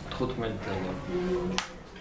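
A man's voice speaking softly with drawn-out tones, then a single sharp click about a second and a half in, after which the voice stops.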